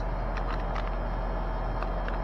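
Central air conditioner's outdoor condenser unit running with a steady low hum. The unit is low on refrigerant.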